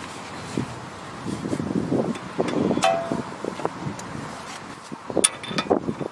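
Needle-nose pliers working the cotter pin out of a tie rod end's castle nut: light irregular metal scraping and small clicks, with a brief squeak about three seconds in and a few sharper clicks near the end.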